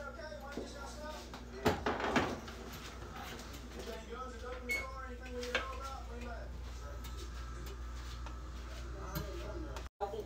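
Oven door of an electric range pulled open, a few clunks and rattles about two seconds in, with a steady low hum under it.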